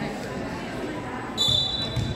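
Referee's whistle: one short, high blast about a second and a half in, the signal to serve. A volleyball is bounced on the hardwood gym floor around it.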